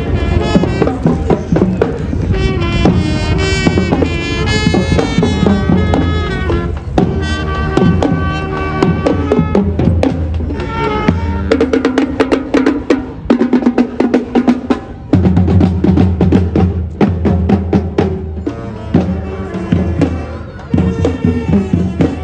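Marching band playing as it passes: saxophones and other horns over bass drum, snare and tenor drums. About halfway through the low parts drop out for a few seconds, leaving the drums over a held note, then the full band comes back in.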